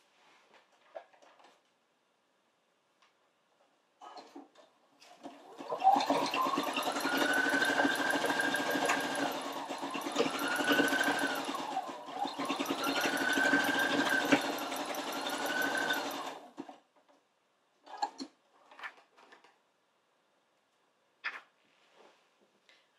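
Computerized domestic sewing machine stitching for about ten seconds. Its motor whine climbs as it speeds up, then dips and rises again several times as the sewing speed changes, and it stops about three-quarters of the way in. Short clicks come before and after the sewing.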